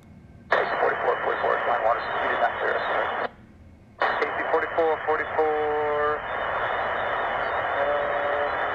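Air traffic control radio heard over a scanner: a thin, static-laden pilot voice transmission that cuts off abruptly. A second transmission breaks in after a short silent gap, with a held 'uh' about five and a half seconds in. It then trails into a steady hiss of an open channel.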